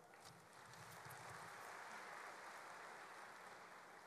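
Faint applause from a seated audience, building within the first second and then holding steady.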